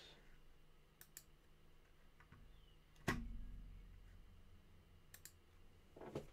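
Faint scattered computer mouse clicks, with one louder thump about three seconds in.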